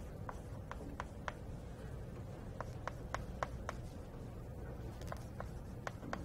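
Handwriting of equations: a run of sharp taps and short strokes from the writing tool, in small irregular clusters, over steady room hum.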